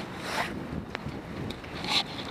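Camera rubbing against clothing: scraping handling noise, with a sharp click about a second in.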